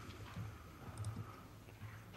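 Faint clicks of a computer mouse, a few small ticks about a second in, over a low hum.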